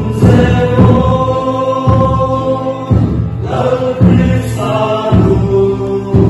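A group singing a hymn in chant-like unison over a deep drum beat that lands about once a second.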